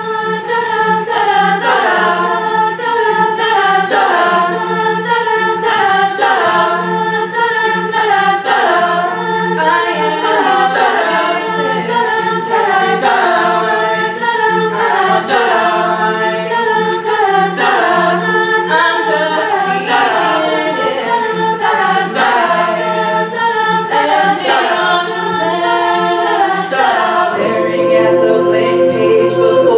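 Mixed-voice a cappella group singing in harmony, coming in all together on the count and repeating a short backing figure over a held low note. A soloist sings into a microphone over the group.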